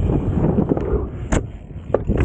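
Dirt jump bike rolling over a loose dirt track: a steady low rumble of tyres with wind buffeting the microphone, and a sharp knock about a second and a half in.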